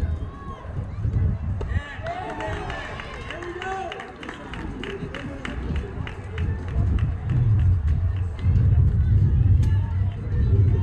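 A sharp knock of bat on ball just before two seconds in, then spectators shouting and cheering with scattered clapping for several seconds. A low wind rumble on the microphone is loud at the start and again near the end.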